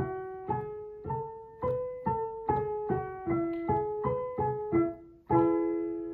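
Piano playing the E major scale pattern one note at a time, stepping up to the fifth and back down to E. It then plays the broken chord E, G sharp, B, G sharp, E and finishes with the E major chord held near the end.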